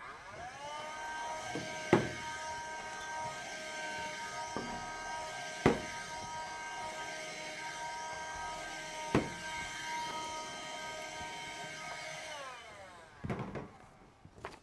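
Small electric motor of a handheld vacuum held to the blackboard. It winds up in pitch at the start and runs with a steady whine, with a few sharp knocks as it is moved over the board, then winds down and stops shortly before the end.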